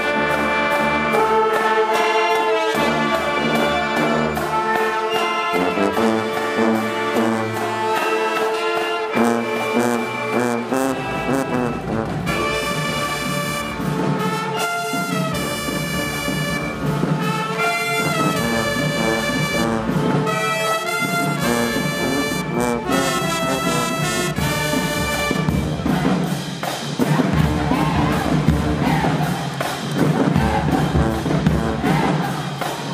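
High school marching band playing a loud brass tune, with sousaphones and trumpets together and sharp hits in a steady rhythm.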